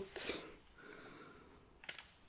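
A short breath in, then faint rustling of the plastic protective cover sheet on a diamond-painting canvas being handled, with a light click near the end.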